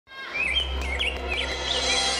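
Birds chirping in short, repeated rising-and-falling calls over a held droning chord, the sound fading in quickly at the start.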